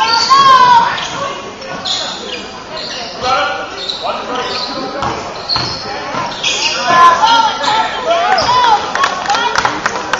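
Basketball game play on a hardwood gym floor: sneakers squeaking in short high squeals and the ball bouncing, with players' voices, echoing in a large gym.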